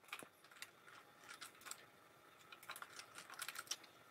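Faint clicking of computer keyboard keys, scattered at first and busier in the second half.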